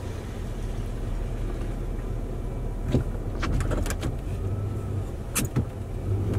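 Snow-plow truck's engine running steadily at low speed, heard from inside the cab as the plow pushes snow forward. A few sharp clicks and knocks come about three seconds in and again near the end.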